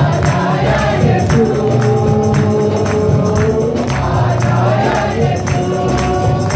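Live Christian worship song: a man singing lead into a microphone, with other voices singing along over acoustic guitar, bass and percussion on a steady beat. Some notes are held long, about a second and a half in.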